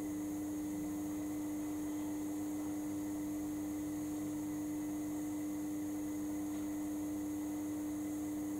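Steady electrical hum: one constant low tone with fainter, higher steady tones above it and a light hiss, and no other sound standing out.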